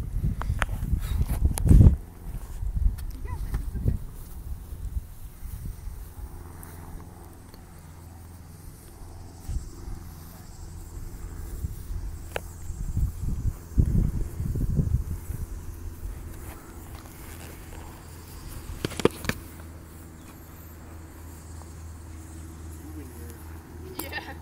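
Foam-padded Belegarth weapons sparring: a few scattered thuds of foam swords striking shields and bodies, the loudest about two seconds in, with a louder flurry around the middle. Under it, a low fluctuating rumble of wind on the microphone.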